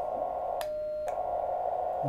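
Radio receiver hiss through a narrow CW filter from a uSDX QRP transceiver. About half a second in, the hiss cuts out and one short, steady sidetone beep sounds in its place while the transmitter is keyed in CW mode; the hiss then returns.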